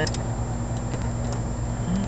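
A few faint clicks of a lock pick working the pins of a pin-tumbler lock under a tension wrench, over a steady low hum.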